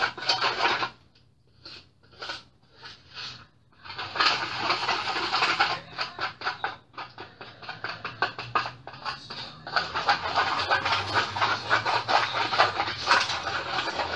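Plastic spoon stirring powdered laundry detergent and water in a disposable bowl, scraping against the bowl to dissolve the grains. A few separate strokes come first, then steady fast stirring from about four seconds in.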